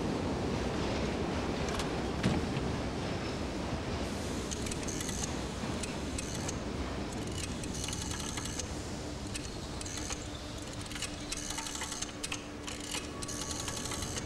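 Low, steady rumble of subway-station ambience. From about four seconds in, over it, come repeated bursts of small metallic clicks and rattles as a payphone is handled before a call.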